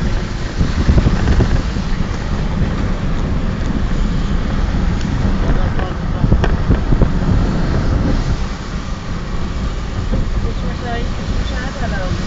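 A car being driven: a steady low rumble of road and wind noise, with a sharp click about six seconds in.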